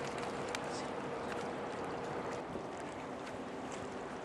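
Steady low hum of a passing 1000-foot Great Lakes freighter's machinery, over a haze of wind and water noise.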